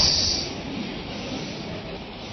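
A hiss that stops about half a second in, then steady low background noise of the room and microphone, with no voice.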